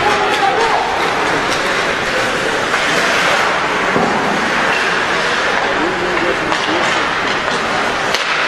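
Steady ice hockey arena noise during play: a continuous bed of crowd and rink sound with a few faint voices in it.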